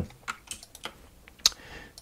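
A few light clicks at a computer, typical of a mouse or keyboard being used to select text. The loudest click comes about one and a half seconds in.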